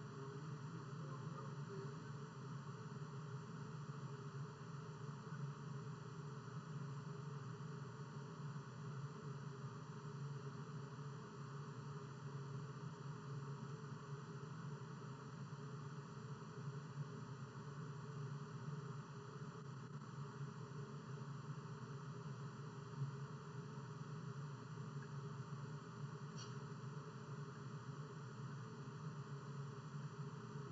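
Steady faint hiss with a low hum under it, the room tone of an open microphone in an empty room. A faint tick comes about three-quarters of the way through.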